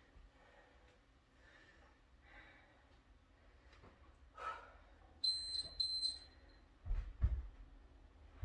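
A quick run of short, high electronic beeps from a workout interval timer, marking a 30-on, 15-off interval, followed about a second later by a couple of low thuds as a body rolls back onto a floor mat.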